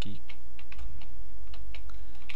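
Typing on a computer keyboard: about ten separate key clicks at an uneven pace, over a steady low electrical hum.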